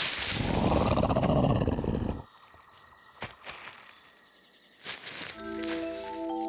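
A cartoon dinosaur's rough roar for about two seconds that cuts off suddenly. A few faint ticks follow, then soft sustained music notes come in near the end.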